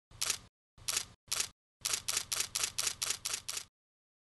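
Camera shutter clicking: three single shots spaced about half a second apart, then a quick run of about eight shots at roughly four a second that stops shortly before the end.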